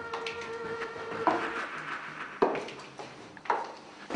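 Slow footsteps on a hard indoor staircase: three distinct steps about a second apart.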